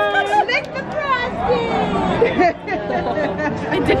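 Several people talking at once in indistinct chatter.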